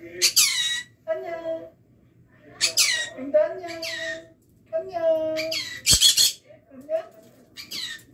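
Green-cheeked conure giving about five loud, short screeching calls that fall in pitch, with softer chattering calls between them. A sharp click comes about six seconds in.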